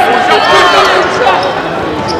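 Live basketball game sound in an arena: a basketball bouncing on the hardwood court under indistinct shouting voices from players and crowd.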